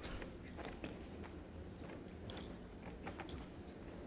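Hushed indoor arena: a faint low hum with scattered small clicks and ticks.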